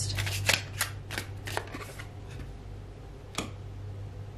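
Tarot cards being shuffled and handled: a quick run of crisp card flicks in the first two seconds, then a single card snap near the end as a card is drawn and laid down.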